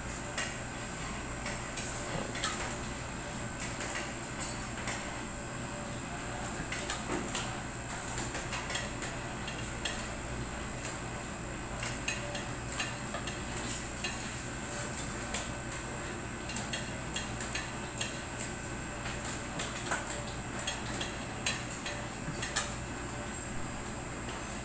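Kitchen utensils and dishes being handled: scattered clinks and clatters, with louder knocks about two and a half seconds in and near the end, over the steady hum of an air-conditioning unit.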